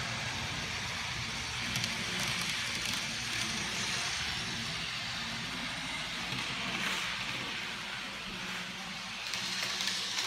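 N gauge model trains running on the layout's track: a steady rolling hiss of wheels on rail and small motors.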